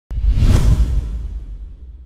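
Intro whoosh sound effect over a deep low rumble. It starts abruptly, is loudest about half a second in, then fades away over the next second and a half.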